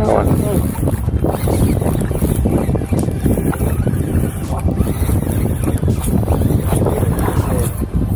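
Wind rumbling steadily on the microphone of a body-worn camera on a small boat on the open sea.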